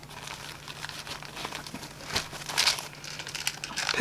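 Rustling, crinkling and small clicks as a hand digs into a nylon first-aid pouch and pulls out a small plastic pill box, louder bursts of handling noise about halfway through.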